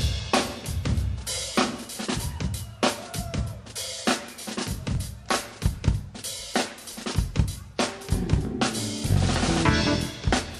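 Live drum kit playing a busy, rapid pattern of snare, bass drum, hi-hat and cymbal hits at the opening of a jazz-fusion piece. Sustained pitched notes join in near the end.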